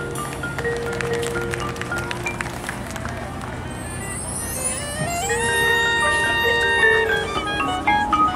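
Marching band with its front ensemble playing a field show. Quiet held notes and light percussion taps give way, about five seconds in, to a rising swell that settles into a loud held chord.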